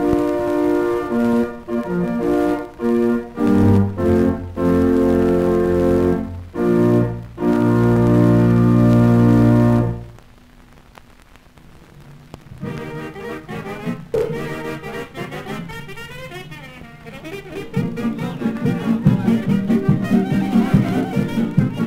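Late-1920s dance band music from a Vitaphone soundtrack disc. Sustained band chords in short phrases end on a long held chord about ten seconds in and cut off. A quiet passage follows, and the band comes back in louder near the end.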